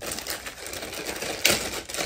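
Small clear plastic zip-seal bag being handled and worked open by hand: crinkling plastic with a run of quick small clicks, and one sharper click about one and a half seconds in.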